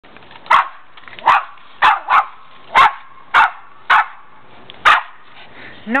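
A Pomeranian barking: eight short, high barks at uneven intervals, about one every half second to a second.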